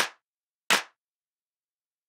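Two sharp hand claps about three-quarters of a second apart, one right at the start and one just under a second in, then nothing. They are quarter-note beats of a clapped rhythm at a steady tempo, two beats in a row followed by rests.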